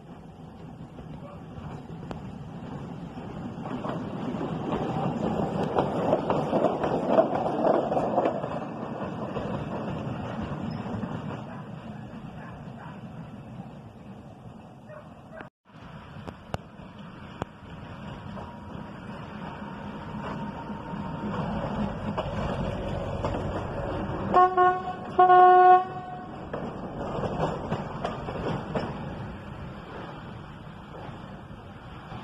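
Diesel railcar set approaching and running past on the track, swelling to a close pass and fading. After a cut, a second railcar set goes by and sounds two short horn blasts a little past two thirds of the way through.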